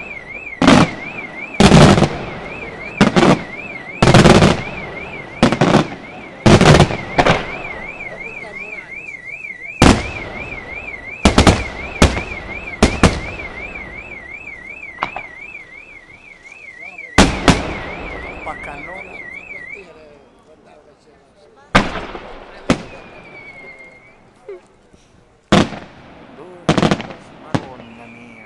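Aerial firework shells bursting overhead in a rapid, irregular series of loud bangs, some followed by crackling. A car alarm warbles steadily underneath and stops about twenty seconds in.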